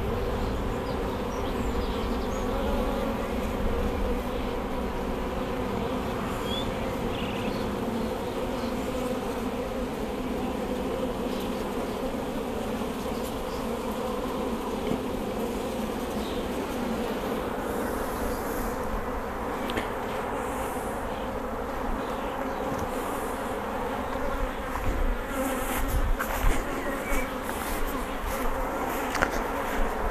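Honeybees humming from an open hive: the steady drone of many bees on uncovered frames.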